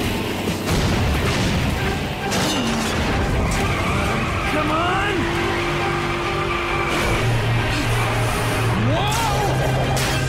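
Cartoon action soundtrack: a music score mixed with vehicle sound effects of engines running and tires skidding. A steady low note comes in about seven seconds in.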